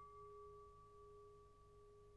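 A faint, steady bell-like tone of two pitches, one middle and one higher, ringing on without fading.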